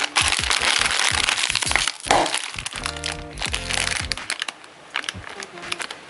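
A Lay's potato chip bag crinkling and crackling loudly as a hand squeezes and opens it. Sharp clicks and crackles follow as chips are shaken out. About three seconds in there is a brief pitched sound.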